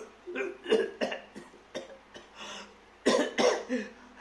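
A man's short, breathy vocal bursts, huffs and grunts without words, coming in an irregular string. The loudest cluster comes about three seconds in.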